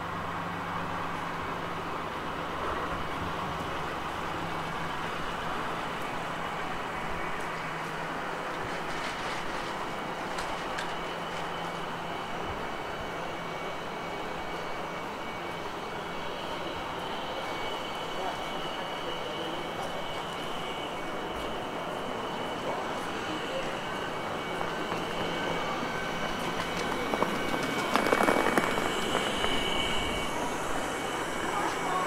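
City-centre street ambience: a steady hum of distant traffic and passers-by. A car engine runs close by for the first few seconds and fades, and a louder rush of noise swells near the end.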